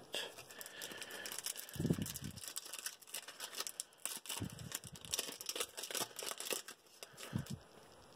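Foil wrapper of a small Pokémon trading-card pack crinkling and being torn open by hand, with scattered faint rustles and clicks of the cards being handled.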